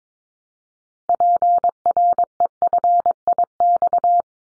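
Morse code sent as a clean, steady-pitched tone at 22 words per minute, keying out a callsign prefix in short and long elements, starting about a second in.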